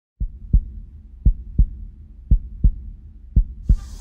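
A heartbeat: four lub-dub pairs of deep thumps, a little under one beat a second, over a low steady rumble.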